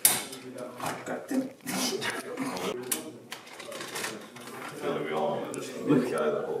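Indistinct low talk that no one catches clearly, with a few sharp clicks and rustles of small items being handled.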